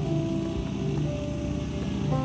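Soft, slow live worship music: sustained keyboard chords held over a low bass note, changing chord about once a second.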